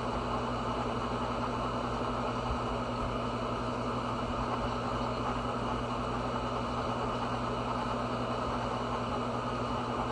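A steady, unchanging machine hum: a low drone with a rushing noise, level throughout.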